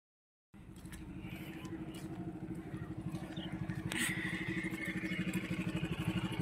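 A motorcycle engine running with a steady, even putter. It starts about half a second in and grows gradually louder, and a thin high tone joins about four seconds in.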